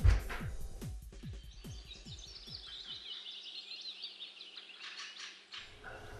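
Music fading out over the first half, its low notes falling in pitch, then birds chirping quickly and high-pitched until shortly before the end.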